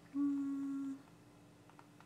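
A person humming a short, steady closed-mouth "mm" on one pitch for just under a second.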